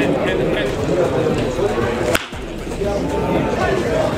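Voices talking and calling on the field, with one sharp crack about halfway through.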